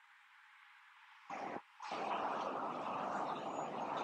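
Near silence for about the first second, then steady road traffic noise from a multi-lane highway: a short burst about a second in, then an even noise from about halfway on.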